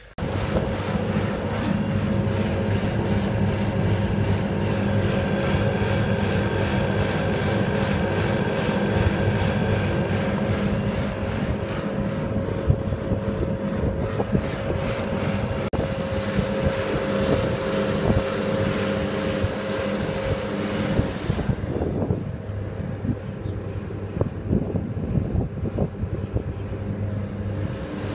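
Refrigeration condensing unit running: the Copeland semi-hermetic compressor humming steadily with its condenser fans, while it is charged with R407F. Heavy wind buffets the microphone throughout, and a steady whine in the sound fades out about 21 seconds in.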